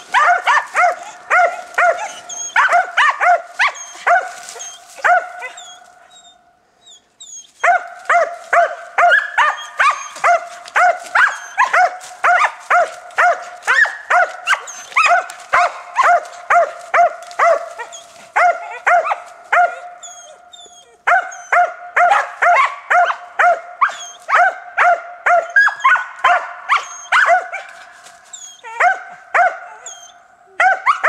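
Hounds barking treed, reared up against the trunk: a fast, steady run of barks at about two to three a second, the bark that tells the hunter the quarry is up the tree. The barking breaks off for about a second and a half some six seconds in, then carries on.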